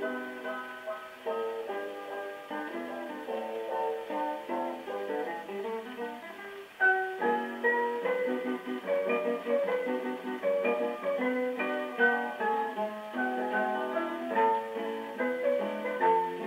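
Brunswick 78 rpm shellac record playing an instrumental passage with plucked guitar on a portable wind-up phonograph, sounding thin and boxy, with no deep bass or high treble. The band gets louder about seven seconds in.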